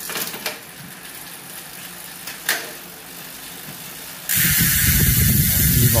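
Mountain bike drivetrain turned by hand, the chain running quietly over the Shimano derailleur with a few sharp clicks. About four seconds in, a loud steady hiss with a low rumble starts suddenly.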